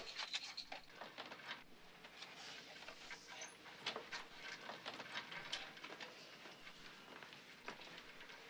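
Faint, scattered clicks and rustles from a person handling the wooden frame of a prop guillotine.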